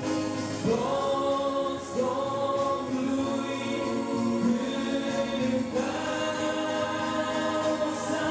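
A man and a woman singing a Christian song as a duet to electronic keyboard accompaniment, with long held notes.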